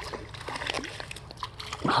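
A hooked striped shiner thrashing at the creek surface, a run of irregular splashes.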